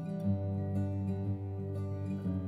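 Background music: a slow, gentle instrumental with plucked acoustic guitar over sustained low notes.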